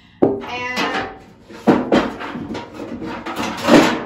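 Metal buckets clanking and scraping against each other as an old rusty bucket is pulled out of the bucket it was nested in, each knock leaving a ringing metallic tone. Three main knocks: just after the start, near the middle, and the loudest near the end.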